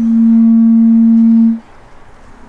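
A harmonium holding one low steady note as the song ends; the note swells, then cuts off about a second and a half in.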